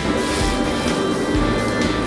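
Scalding oil ladled over a dish of sliced beef and fresh Sichuan peppercorns, sizzling with a hiss that is strongest in the first half-second and then dies down, under background music.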